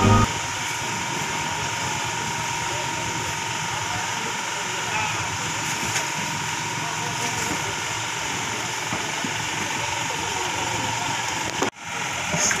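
Steady harbour din: a fishing boat's engine running at idle, with people's voices mixed into the background. It is briefly cut off just before the end.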